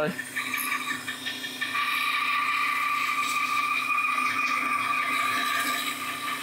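Bandsaw running, its blade cutting through a cherry burl bowl blank with a steady high-pitched whine and rasp that firms up about a second and a half in. The blade has been on for weeks and is not as sharp as it could be.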